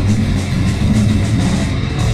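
Grindcore band playing live at full volume: heavy distorted bass and guitar over rapid, evenly repeating drum hits.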